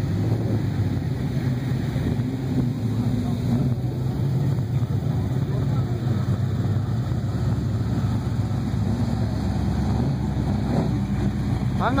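A car engine idling with a steady, low rumble.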